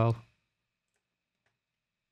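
A man's voice trails off in the first moment, then near silence broken by two faint clicks of a computer mouse, about one second and one and a half seconds in.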